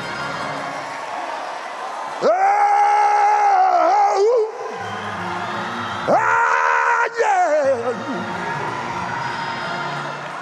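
A man's voice letting out two long, high wailing cries, each held at one pitch and then wavering down at its end, over background music.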